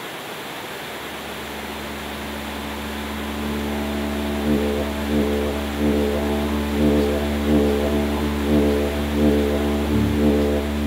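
Didgeridoo drone fading in over the rush of a river: a low, steady tone whose overtones begin to pulse in a rhythm about halfway through, growing louder toward the end.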